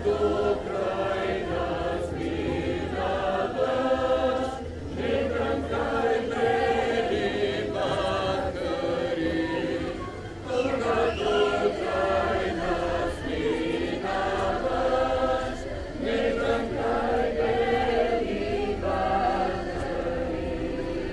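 A group of voices singing a Bulgarian folk song together, in long phrases separated by brief pauses.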